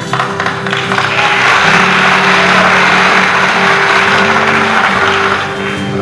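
An audience applauding, swelling about a second in and fading near the end, over steady background music.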